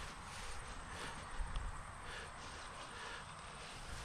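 Faint, steady outdoor background noise with an irregular low rumble of wind on the microphone.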